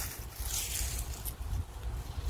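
Rustling as a gloved hand moves through low leafy plants, strongest about half a second in, over a steady low rumble of wind buffeting the phone's microphone.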